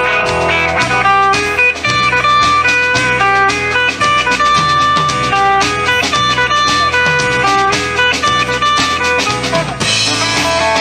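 Live country band playing an instrumental break between verses: a lead guitar playing a run of single notes over bass guitar and a drum kit keeping a steady beat.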